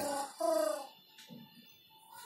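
A man's voice holding a drawn-out syllable for under a second, then faint scratching of a marker writing on a whiteboard.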